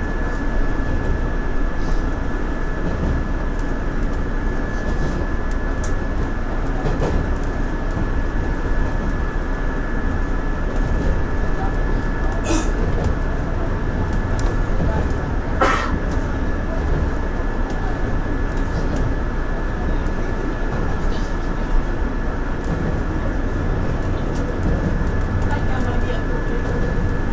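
Running noise of a JR Central 117 series electric train heard from inside the cab at speed: a steady rumble of wheels on rail with a thin steady high whine, and two sharper clacks about twelve and fifteen seconds in.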